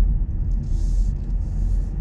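Steady low road-and-engine rumble inside a moving car's cabin, with two brief faint hisses in the middle.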